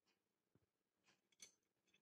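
Near silence, with a few faint short clicks and rustles, a small cluster of them about one and a half seconds in, from cloth strips being handled and tied around a mop stick.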